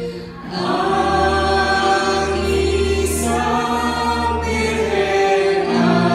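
A congregation singing a Tagalog Christmas hymn together, with a woman's voice leading on a microphone. There is a brief break between sung lines at the very start, then sustained held notes.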